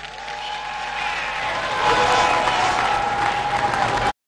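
Audience applause that builds over the first two seconds and then holds steady, with a steady tone running through it.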